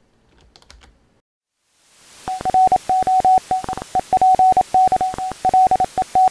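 Morse code: a single steady beep keyed on and off in short and long pulses over a background hiss. The hiss fades in a little under two seconds in and the beeping starts just after, preceded by a few faint clicks.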